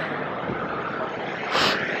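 City street traffic noise: a steady wash of passing cars and motor scooters, with a brief louder hissing swell about three-quarters of the way through.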